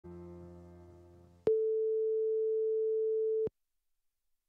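A faint fading note with overtones, then a loud steady electronic tone of one mid pitch that starts suddenly about one and a half seconds in, holds for about two seconds and cuts off sharply.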